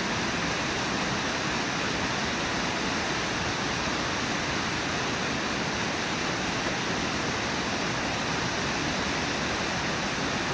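Steady rushing of the Brooks River's flowing water, an even hiss with no separate splashes standing out.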